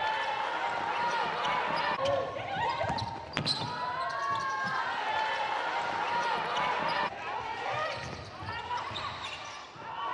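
A basketball bouncing on a hardwood court as it is dribbled, with sneakers squeaking and players' voices in the arena.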